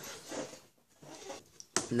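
Soft handling noises as a smartphone is picked up off a wooden table, with a short click about one and a half seconds in. A man starts speaking right at the end.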